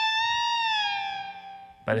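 Fender Stratocaster electric guitar sustaining a single high bent note. The pitch rises a little, then eases back down as the note fades out shortly before the end.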